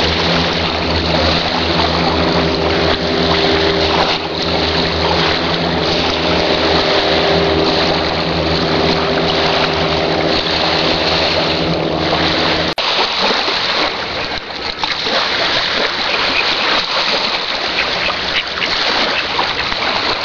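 A seaplane's engine drones steadily at one pitch after its take-off run, over a rush of wind and water; about two-thirds of the way through it stops abruptly, leaving the rushing wind and water.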